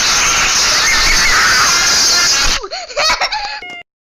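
A loud, harsh, distorted jumpscare sound effect, a screeching blast that cuts off suddenly after about two and a half seconds, followed by a few short voice-like squeaks.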